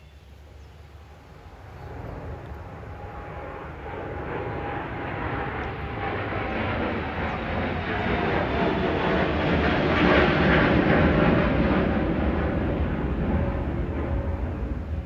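Engine noise of something passing at a distance, a steady rumble with a faint held tone that swells slowly over several seconds, is loudest about ten seconds in, then begins to ease.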